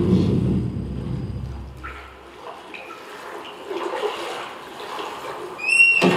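A low rumbling drone that fades out about two seconds in, leaving a faint hiss with a few short high tones, and a brief high rising tone near the end.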